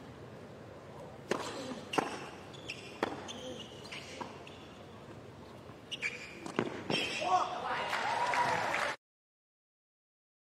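Tennis ball struck back and forth by racquets in a rally, about seven sharp hits roughly a second apart from a serve onward. Then voices and crowd noise rise after the point ends, and the sound cuts off abruptly about nine seconds in.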